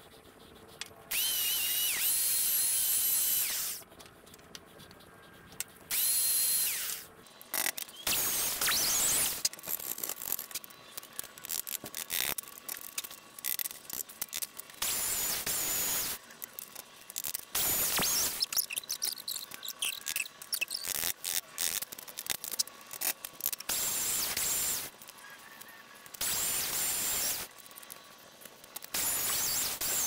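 Handheld electric power tool run in short bursts of one to three seconds, about eight times, its motor whining up to speed and winding down between cuts while trimming wood a little at a time to get a tight fit. Small clicks and handling knocks come between the bursts.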